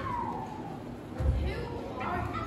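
A person's voice sliding down from high to low in pitch, followed about a second later by a dull thump.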